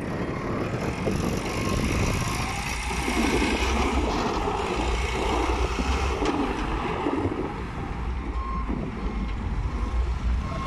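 Diesel engine of a 2001 Case 580 Super M backhoe loader running steadily as the machine drives and turns on gravel. A few faint short beeps sound, about two seconds in and again near the end.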